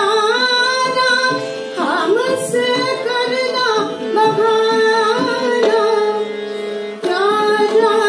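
A woman singing a Hindi devotional song to Krishna in long, ornamented held notes, accompanied by harmonium and tabla. Her voice drops out for about a second near the end while the harmonium holds its notes, then comes back in.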